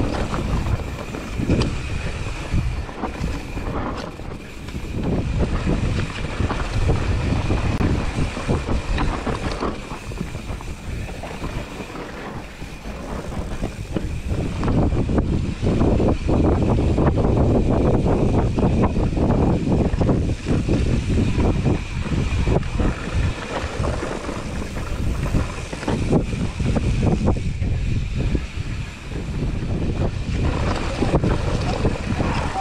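Mountain bike descending a dirt forest trail at speed: wind buffeting the camera microphone, tyres rolling over dirt and roots, and the bike rattling over bumps, with a steady high-pitched buzz running underneath. The rumble grows louder about halfway through as the ride speeds up.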